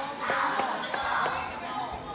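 A basketball bouncing on a gym floor, a few separate thuds, over background crowd chatter.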